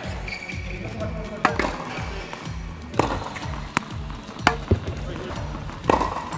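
Background music with a steady beat, over several sharp pops of tennis balls being hit with rackets and bouncing on the court, spaced about a second apart.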